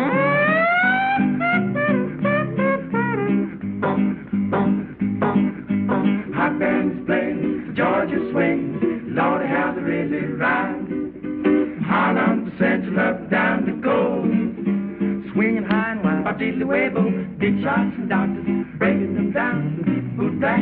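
Male vocal quartet singing in short, quick phrases to a strummed guitar accompaniment, with a voice sliding upward at the very start.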